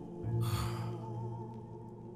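Drama background score holding a low, sustained drone, with a soft breathy hiss rising and fading about half a second in.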